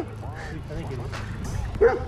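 A dog barking: one bark right at the start and a louder one near the end, over low wind and riding noise.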